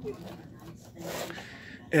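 Faint handling noise: a brief, quiet rubbing scrape about a second in.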